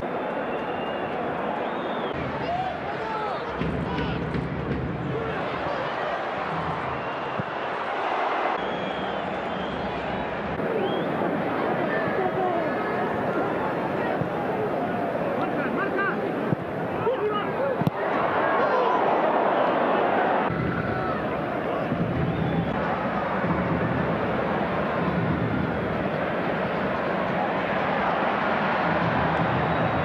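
Football stadium crowd noise: many spectators shouting and calling at once, rising and falling with the play, with a couple of sharp knocks about halfway through.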